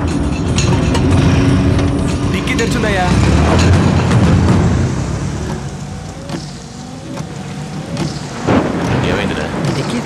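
Film sound effects of a car driving at night: a loud, low engine rumble that eases off about halfway through. A sharp knock comes near the end.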